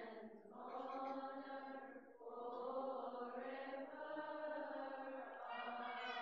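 Male voices chanting a Coptic Orthodox liturgical hymn in unison, in long, slowly wavering held phrases with short breaths between them.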